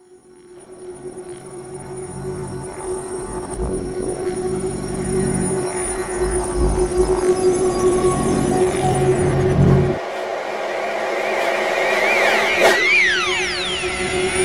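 Electronic music played in reverse, fading in from silence: a held tone over a low pulsing bass that drops out about ten seconds in, then many criss-crossing rising and falling pitch sweeps near the end.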